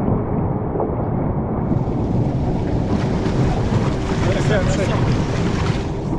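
Wind buffeting the microphone of a camera on a towed inflatable, with water rushing and splashing against the tube as it is pulled fast over the sea. About two seconds in the hiss turns brighter as more spray is thrown up.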